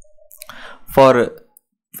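Speech only: a man's narrating voice says a single word, with a short click at the very start.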